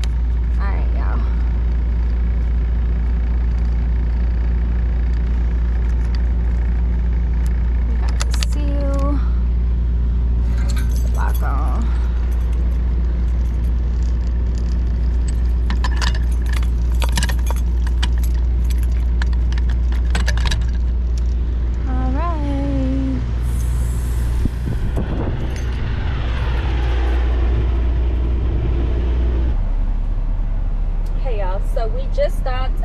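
Metal clinks and rattles of a trailer's rear-door lock rod, latch and padlock being handled by gloved hands, over a steady low engine drone. A short hiss of air comes about two-thirds of the way through.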